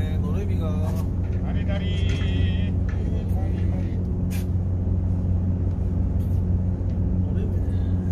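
Small fishing boat's engine idling with a steady low hum, with a few sharp clicks from gear on deck.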